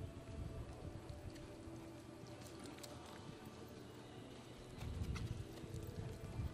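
Hoofbeats of a horse galloping on arena dirt, growing louder about five seconds in.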